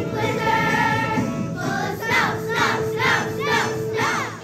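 Children's choir singing. About halfway through, the sound turns into a run of repeated swoops up and down in pitch, about two a second, over a steady held note.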